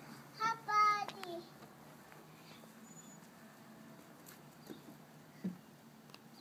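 A young child's short high-pitched vocal call, rising and then falling in pitch, lasting about a second and starting about half a second in. A faint low thud follows near the end.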